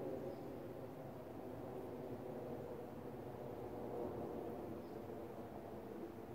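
Steady low background hum, even throughout, with no distinct sound events.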